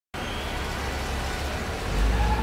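Road-traffic ambience sound effect: a steady rumble of passing traffic that starts suddenly just after the beginning.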